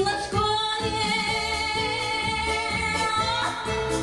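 A woman singing a Russian pop-folk song into a microphone, holding one long high note with vibrato for about three seconds, over backing music with a steady beat. The voice stops shortly before the end and the backing music carries on.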